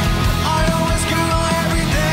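Live rock band playing: electric guitars over a steady drum and bass beat.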